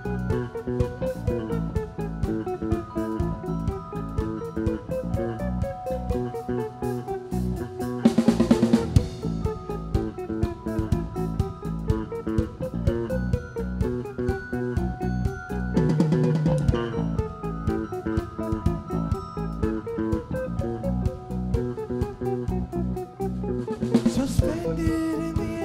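Live band playing an instrumental jam: a drum kit keeps a steady, driving beat under guitar and a moving bass line. The music swells louder about eight seconds in and again around sixteen seconds.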